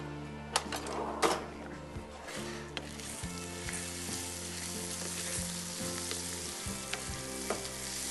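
Rice pilaf sizzling in a hot saucepan as it is stirred, with a few knocks of the spoon against the pan in the first three seconds.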